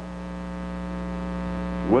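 Steady electrical mains hum with a stack of evenly spaced overtones, slowly growing a little louder. A man's voice starts right at the end.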